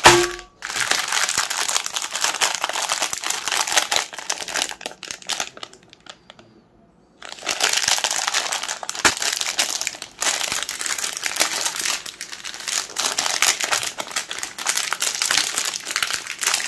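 Plastic ice-cream bar wrappers crinkling as they are handled, with a short ringing knock at the start as the bars land on a glass plate. The crinkling stops for about a second around six seconds in, then carries on.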